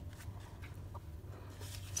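Faint rustling of paper banknotes being handled over a clear plastic binder pouch, with a low steady hum underneath.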